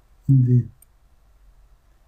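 A single light computer mouse click a little under a second in.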